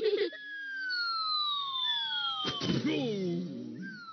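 Cartoon falling sound effect: a long whistle sliding steadily down in pitch, ending in a thud about two and a half seconds in, followed by a short wobbling tone.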